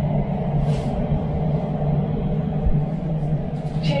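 Interior noise of an Elizabeth line Class 345 train running through a tunnel, heard from inside the carriage: a steady low rumble, with a brief hiss a little under a second in.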